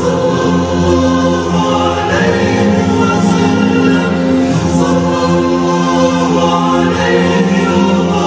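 Film score: a choir singing long held chords over music, loud and even throughout.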